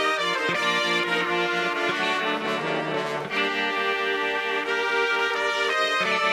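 Instrumental background music of held chords that shift every second or so.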